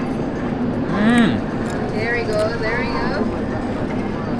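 A man's appreciative 'mmm' while tasting food, about a second in, over steady crowd chatter, with higher-pitched voices in the background around the middle.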